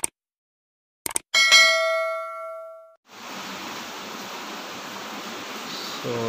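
Subscribe-button animation sound effect: a mouse click, a quick double click about a second later, then a bright bell ding that rings out for about a second and a half. A steady faint hiss follows.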